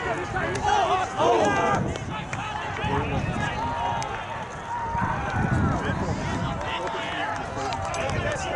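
Indistinct voices of players and spectators calling out across an open playing field, over a low steady rumble.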